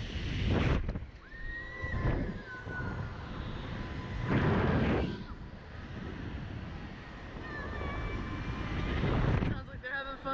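Wind rushing over the microphone of a SlingShot ride capsule in about four gusts as it swings and bounces on its cords, with the riders laughing and squealing.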